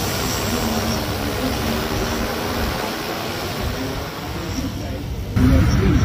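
Multirotor quadcopter drone in flight, its rotors making a steady buzzing whir with a few faint held hum tones. About five seconds in, it cuts abruptly to a louder, lower sound with a voice in it.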